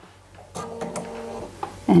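Bernina sewing machine's motor whirring steadily for about a second and a half, starting with a click about half a second in and with another click near the end.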